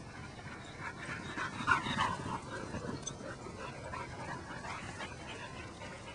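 Border collies panting, an uneven run of soft breathy sounds that is loudest about two seconds in.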